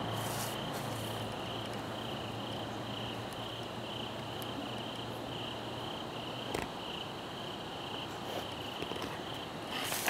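A cricket chirping in a steady, even rhythm, about two high pulses a second, over a low hum; one short knock about two-thirds of the way through.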